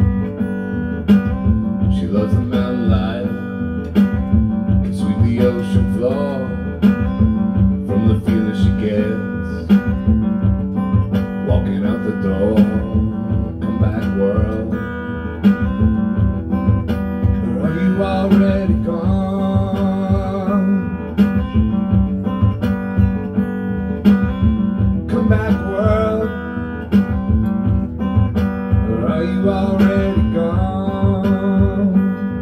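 Amplified guitar played live, strummed in a steady rhythm over a low note held throughout, as an instrumental passage of a song.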